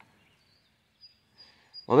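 Near silence with faint, thin, high bird chirps from about halfway through; a man starts speaking right at the end.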